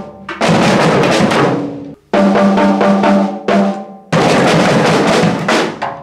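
Snare drums, toms and floor toms in call and response: a single snare drum plays a short pattern, then a group of children's drums answers together in a dense, continuous roll. This happens twice.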